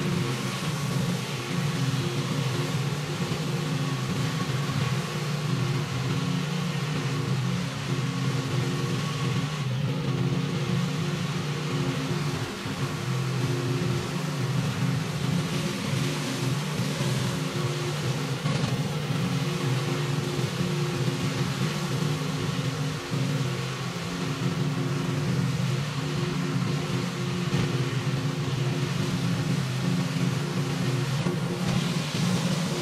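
Pressure washer's engine running steadily at constant speed, with the hiss of high-pressure water from a spinning flat surface cleaner being pushed over concrete.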